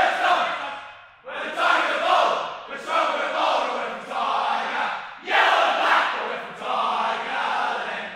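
A team of male footballers in a linked-arm huddle singing their club song together, shouted more than sung, in loud phrases with two short breaks.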